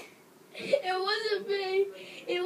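A high-pitched wordless voice, starting about half a second in and drawn out for over a second, wavering and then held on one note.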